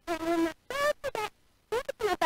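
A woman's voice broken into short, garbled fragments with gaps of dead silence between them, the choppy sound of audio dropouts in a live stream.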